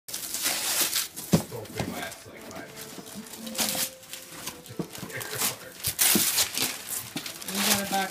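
Gift wrapping paper being torn and crinkled as presents are unwrapped, in repeated short rustling rips, with one sharp knock about a second in. Voices come in near the end.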